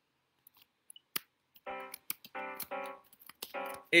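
A C Phrygian chord with a D-flat on top of the C, played four times as short keyboard-sound chords, as its notes are entered into notation software. Sharp computer clicks come before and between the chords.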